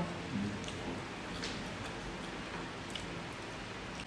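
Quiet eating sounds: faint chewing and mouth noises, with a couple of soft clicks about one and a half and three seconds in.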